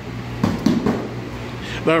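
A quick series of padded thuds: fists striking a handheld strike shield in a fast right-left-right combination, landing about half a second to a second in.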